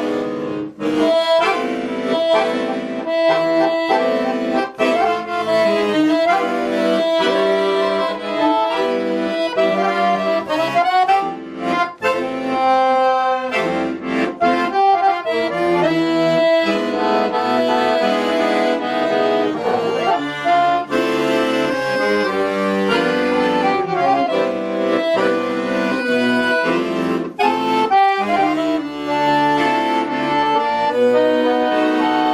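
A Bugari piano accordion played solo: a melody on the keys over held chords, with brief breaks between phrases.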